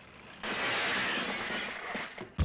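A burst of rushing, hiss-like noise starts about half a second in, lasts about a second and a half and fades near the end.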